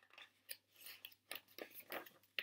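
Faint paper rustles and crinkles as the pages of a picture book are handled and turned: a string of short, soft crackles.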